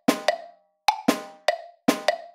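A sampled drum in notation-software playback strikes out a written triplet rhythm. About six sharp single hits land in two seconds at uneven spacing, each with a short ringing decay.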